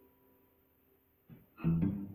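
Acoustic guitars in a live duo: a ringing chord dies away to near silence, then a quick stroke and a loud strummed chord come in about one and a half seconds in.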